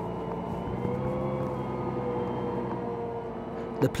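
Challenger MT765B tractor's diesel engine running steadily under load while pulling an eight-furrow plough, with a slight rise in its pitch about a second in.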